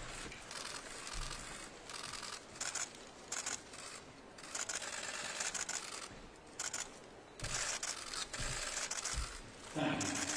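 Many camera shutters firing in rapid bursts from a pack of press photographers. The clicking comes in clusters that start and stop every second or so.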